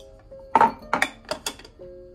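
Teaware handled on a table: about four sharp clinks and knocks of metal and ceramic in quick succession, the first the loudest, as a tea strainer and canister are set against a teapot. Soft background music plays under it.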